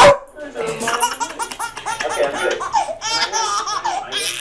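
A baby laughing hard in quick repeated bursts, just after one loud, sharp dog bark at the very start.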